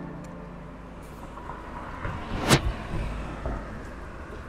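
Street traffic noise at a town crossing, with a vehicle's low rumble swelling in the middle and one sharp click about two and a half seconds in, the loudest sound.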